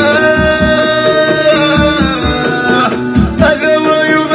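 Male singer performing a Middle Atlas Amazigh song live, holding one long sung note for nearly three seconds before moving on to new notes, over plucked-string accompaniment and a steady low beat.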